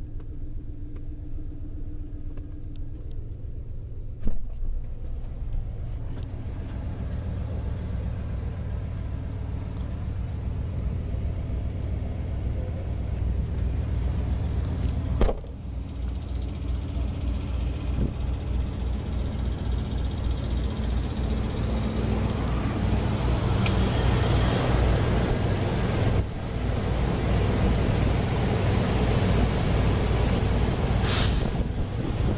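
A 2001 Dodge Ram pickup's 5.2-litre V8 idling steadily, heard first from inside the cab and then from outside. There are two sharp thumps, the louder about fifteen seconds in.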